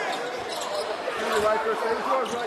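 Basketball dribbled on a hardwood court, with voices in the arena.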